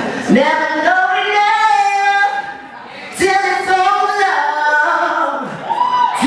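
A singer's voice holding long notes that slide up and down in pitch, with a brief break about two and a half seconds in.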